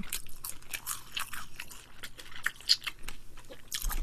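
Close-miked chewing of a deep-fried, battered chili pepper stuffed with meat (gochu-twigim), with irregular sharp crackles as the fried coating is bitten and chewed.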